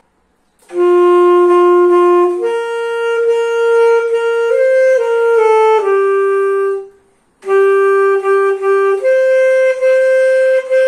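Alto saxophone played solo and unaccompanied: a slow melody of long held notes that begins just under a second in, with a short break for breath about seven seconds in before the phrase goes on.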